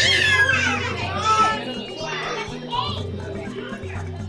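Children's high-pitched excited squeals and shouts, loudest in the first second and a half, over background music with a steady repeating bass line.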